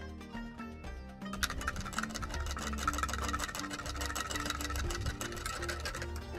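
Soft background music with held notes. From about a second in, a rapid scratchy rubbing sound: a metal spoon stirring dry yeast into water in a glass jar.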